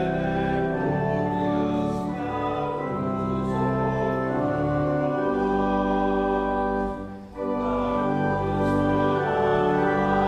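Congregation singing a hymn with organ accompaniment, long sustained chords, with a brief break between phrases about seven seconds in.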